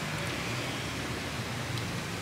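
Steady background noise of the room: an even hiss over a low rumble, with no distinct event.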